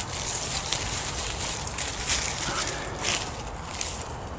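Pruning secateurs snipping through hellebore leaf stalks, a few sharp clicks, amid rustling as the leaves are handled and pulled away.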